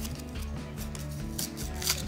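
Small foil wipe packet crinkling and tearing open in the hands, with a sharper rip near the end, over background music.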